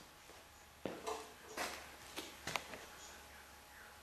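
A few faint knocks and light clatters, about five in two seconds, from the aluminum and wood hexacopter frame being set down and handled.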